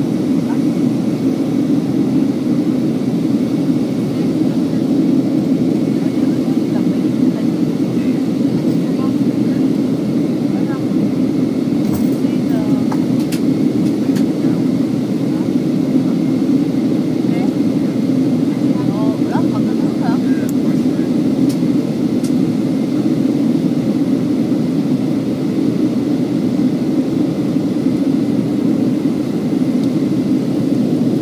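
Steady cabin roar of a Boeing 737-800 in flight, heard from a window seat over the wing: the hum of its CFM56 turbofans and the rush of air over the fuselage, unchanging throughout.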